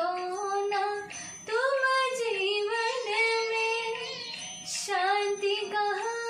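A woman singing a Hindi devotional song (a bhajan to the Sadguru) in long, drawn-out held notes that bend gently in pitch, with a brief breath about a second and a half in and another near the end.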